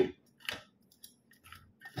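A single short, soft click about half a second in, followed by a few fainter ticks.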